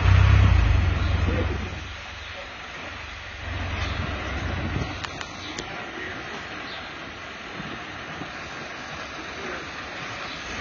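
Low motor-vehicle rumble, loud for the first couple of seconds and then dropping away, with a weaker swell of it a few seconds later and steady traffic-like background noise.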